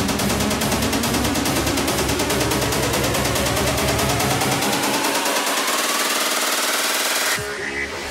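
Psytrance build-up: a fast, dense drum roll under a synth sweep rising steadily in pitch for about seven seconds. The bass drops away in the second half, and the music briefly cuts out near the end, just before the drop.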